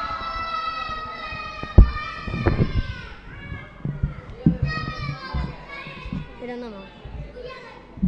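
A child's high voice holding one long note for about three seconds, then a run of shorter sung or called phrases. A single sharp knock comes about two seconds in.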